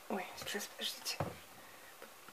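A plastic fertilizer packet rustling and crinkling as it is handled and lifted, with a few quiet words under the breath. The sound lasts about a second, then room tone.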